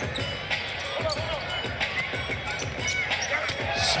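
A basketball is dribbled on a hardwood arena court in a run of low bounces, under arena music and crowd noise.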